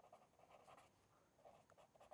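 Near silence, with faint scratching of a felt-tip marker writing on paper.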